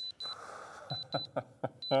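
Short high electronic beeps in pairs, about one pair a second, a sound effect marking the end of a countdown and the reveal of a price. A soft hiss sits under the first half second, and a few faint short knocks follow.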